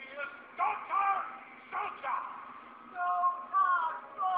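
Film soundtrack, thin and band-limited as if recorded off a TV: a series of drawn-out, wavering voice-like calls that glide in pitch, loudest near the end.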